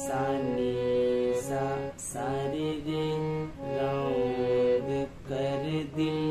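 Harmonium playing a slow film-song melody note by note over a steady low drone, with a voice singing the sargam note names along with it.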